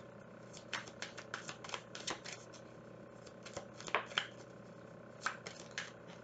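Tarot cards being shuffled by hand: a soft, irregular run of small clicks and taps as the cards slip against each other.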